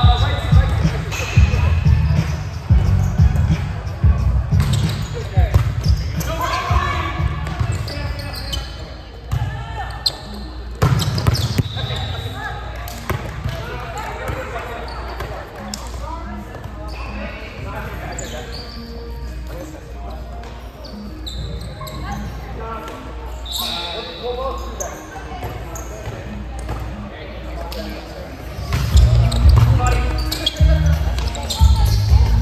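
Indoor volleyball play in a large gym: sharp knocks of the ball being struck, with heavy thudding during the rallies in the first few seconds and again near the end, and players' voices calling out. Everything echoes in the hall.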